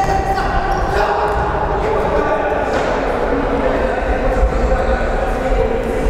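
Futsal ball being kicked and bouncing on the hard sports-hall floor. Players' shouts and calls echo around the hall.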